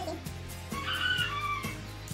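Background music with a steady beat, and a little before the middle a bird's drawn-out call, about a second long, rising above it.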